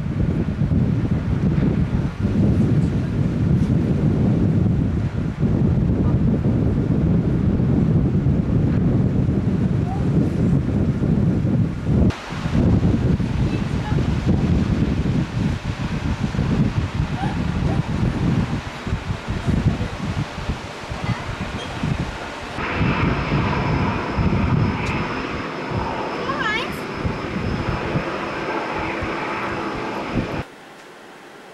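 Wind rushing over the camcorder microphone on a ship's open deck, a heavy low rumble. After about twenty seconds it eases, and a steadier hum with faint high tones carries the last seconds.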